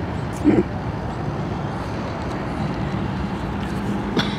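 Steady street traffic noise from passing cars, with one short loud sound about half a second in and a low steady hum that comes in past the middle.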